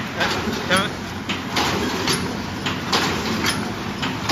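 Automatic paper cup forming machine running: its indexing turret and presses clatter in a steady rhythm of sharp mechanical knocks, a few a second, over a continuous machine hum.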